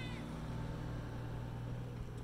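A steady low hum runs throughout, with a brief high squeak right at the start.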